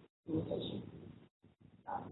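A woman's drawn-out 'uh' of hesitation, lasting about a second. The audio drops out briefly afterwards, and speech picks up again near the end.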